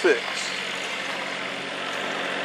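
A steady engine hum, like an idling motor, with a constant low drone under an even background noise.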